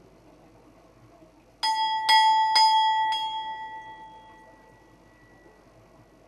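Hanging temple bell rung by hand with four strikes about half a second apart, a clear metallic ring that carries on and fades over a couple of seconds after the last strike.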